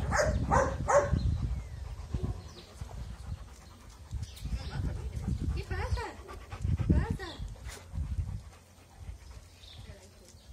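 Shelter dogs barking in their kennels: a quick series of about four barks in the first second, then scattered calls, with a longer wavering call about six seconds in and another short run of barks just after.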